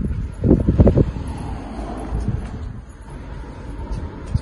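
Wind rumbling on a handheld phone microphone, with a few louder low thumps in the first second.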